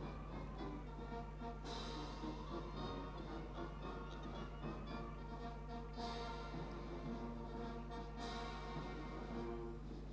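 Orchestral music playing steadily, with a low, constant hum underneath.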